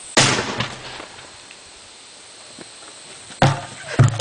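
A Pontiac airbag module firing with one sharp, loud bang just after the start, launching a plastic barrel into the air. About three and a half seconds later there is a second loud thud as the barrel comes back down and hits the ground.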